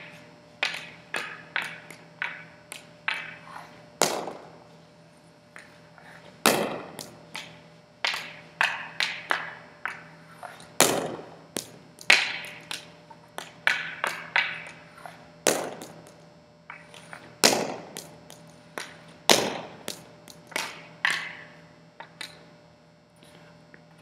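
Ice hockey stick and puck on a hard gym floor during repeated wrist-shot practice: light clicking taps as the blade drags the puck, then a sharp crack with each shot, about seven loud ones. Each crack rings with echo in the gym.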